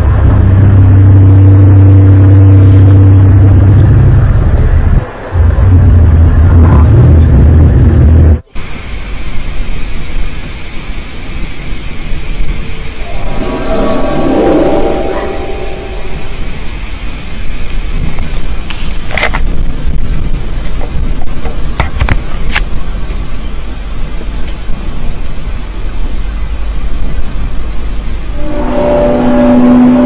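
A loud, deep droning hum with higher overtones, one of the unexplained 'strange sky sound' recordings; it stops abruptly about eight seconds in. After that a steady hiss runs on, with a wavering groan for a few seconds near the middle and a couple of sharp clicks. Near the end a new low drone begins.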